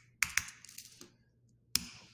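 Computer keyboard keystrokes: a few separate, sharp key clicks spaced out, with a quiet gap in the middle and a sharper click near the end.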